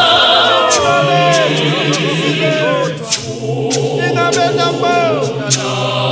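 Mass gospel choir singing a cappella in Zulu, voices gliding between notes. The sound thins to fewer voices about halfway through, then the full choir returns.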